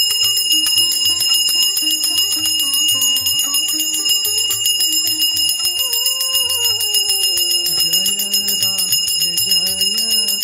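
A brass puja hand bell rung rapidly and without a break, its high ringing tones held steady throughout, over devotional music with a wavering melody.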